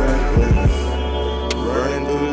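Instrumental hip hop beat with no vocals: a deep sustained bass note under held synth chords, two quick kick-drum hits in the first half and a sharp snare-like hit near the end.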